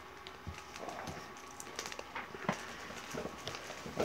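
Hands rummaging in a plastic mailer package: scattered soft crinkles and small clicks and taps, with a few sharper ticks around the middle.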